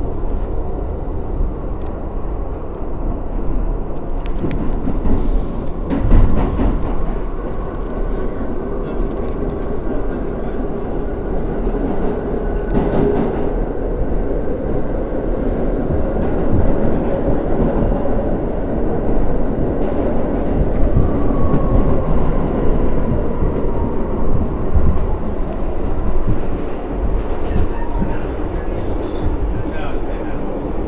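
Inside a Bombardier R62A subway car under way in a tunnel: a steady roar of wheels on rails, with a faint whine that shifts in pitch and a few sharp knocks, the loudest about six seconds in.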